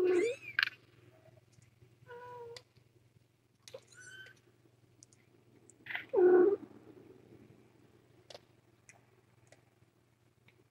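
Cats meowing: four short calls, at the start, about two seconds in, a higher, thinner one about four seconds in, and the loudest just after six seconds. A faint steady low hum runs underneath.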